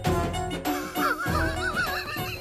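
Background film music, with a wavering, horse-like whinny starting about halfway through.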